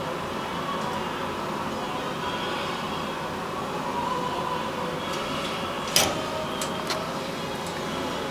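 Steady mechanical background hum, with one sharp click about six seconds in and a few fainter ticks around it.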